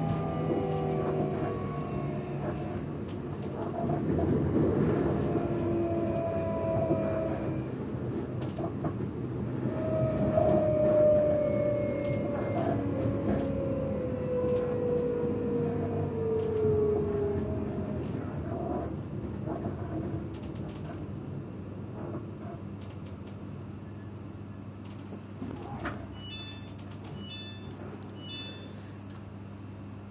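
Electric train slowing into a station: its traction motors whine in several tones that fall steadily in pitch while the wheel and rail rumble dies away, until the train stands with only a steady low hum. Near the end a short series of electronic beeps sounds, about four in two seconds.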